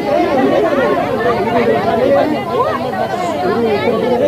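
Several people talking over one another in a crowd, an overlapping babble of voices with no single clear speaker.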